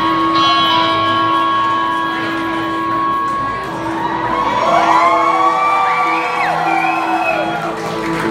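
Live rock band holding a long sustained chord. From about halfway through, crowd whoops and cheers rise over it.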